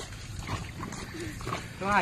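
Paddles of a Thai longboat crew stroking the river water in unison, with faint splashes and knocks from the strokes. A man's voice calls out near the end.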